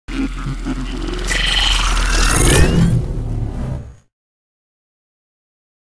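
Short electronic intro sting: a deep bass rumble under whooshing noise, with a rising sweep in its second half, that cuts off about four seconds in.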